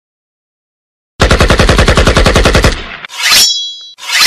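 A rapid burst of machine-gun fire, about a dozen shots a second, lasting about a second and a half. Near the end comes a short whoosh with a high, steady ringing tone.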